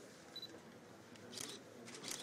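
Faint DSLR camera shutter clicks: one sharp click about a second and a half in and a brief one near the end, with a short high beep under half a second in.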